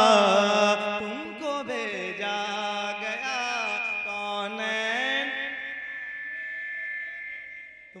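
A man singing a naat unaccompanied through a microphone, with ornamented, wavering long-held notes. The singing grows softer and dies away near the end.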